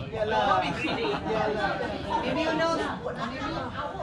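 A group of people chatting, several voices overlapping so that no single speaker stands out.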